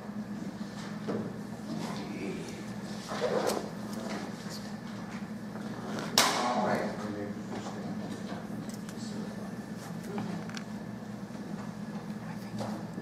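Meeting-room ambience: a steady low electrical hum with faint, indistinct murmuring. A brief noise comes about three seconds in, and a sudden sharp noise about six seconds in dies away quickly.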